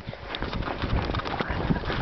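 Footsteps crunching through fresh snow in a quick, uneven rhythm, with some rumble of the handheld microphone moving.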